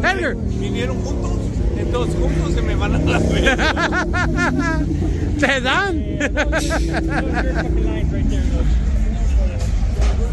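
Steady low rumble of car engines from traffic cruising past on a busy street, with voices and laughter of people standing nearby over it.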